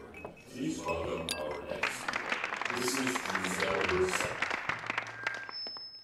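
Indistinct murmur of many people talking, with glasses clinking now and then. A brief high ringing tone sounds just before the chatter stops abruptly at the end.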